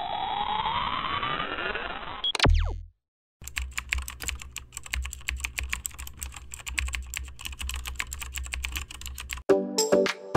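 Edited intro sound effects: a rising electronic sweep that ends in a sharp glitch and a short low thud, then a moment of silence. Then comes a long run of rapid computer-keyboard typing clicks over a low hum. Music starts about half a second before the end.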